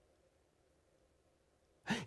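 A pause in a man's speech: faint room tone, then a short intake of breath near the end as he gets ready to speak again.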